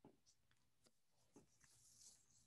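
Near silence, with a few faint, short taps of a stylus writing on a tablet screen.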